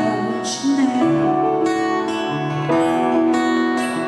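Live band music led by a strummed acoustic guitar, with fresh chords every second or so.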